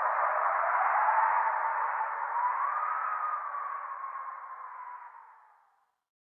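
Electronic outro of the song fading out: a muffled hiss with a faint wavering tone above it, dying away to silence about five and a half seconds in.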